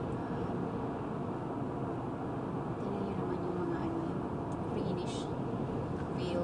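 Steady road and engine noise inside a moving car's cabin, with brief faint snatches of voice in the second half.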